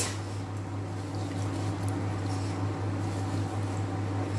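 Steady low hum with a faint, even hiss from a gas burner under a pot of rice simmering in foamy water.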